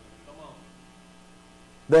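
Steady electrical mains hum from a church sound system, heard in a pause between a man's sentences, with a faint murmur about half a second in. A man's voice starts again at the very end.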